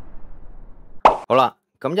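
The rumbling tail of an intro boom sound effect fades out over the first second. About a second in come two short voiced syllables, and a man's narration begins near the end.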